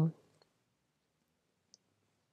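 A woman's spoken word trails off, then near silence with one faint short tick near the end.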